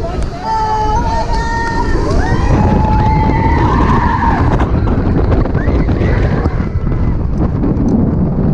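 Riders screaming on a launched roller coaster at speed over heavy wind rush on the microphone. There are long held screams through the first half and another rising scream later.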